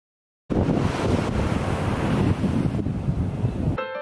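Wind buffeting the microphone with the wash of ocean surf behind it, a loud gusty rumble that starts abruptly about half a second in after silence and cuts off shortly before the end, where piano music takes over.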